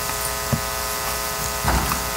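Steady electrical buzz at one unchanging pitch, with a row of evenly spaced overtones.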